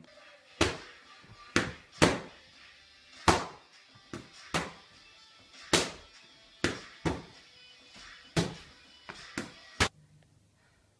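Boxing gloves punching focus mitts: about fourteen sharp smacks at an uneven pace, several in quick one-two pairs, over faint music.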